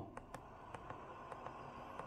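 Faint clicks from front-panel buttons being pressed on an Icom IC-706MKII transceiver, a few scattered presses over low background noise.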